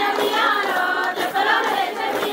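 Group of women and girls singing a Bathukamma folk song together in chorus.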